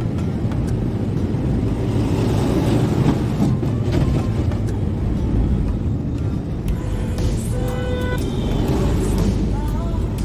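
Goods truck driving along a highway, heard from inside the cab: a steady engine and road rumble, with music playing over it.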